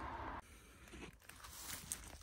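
Faint footsteps crunching through dry fallen leaves and twigs on a forest floor, as scattered short crackles. A steady background hiss cuts off abruptly about half a second in.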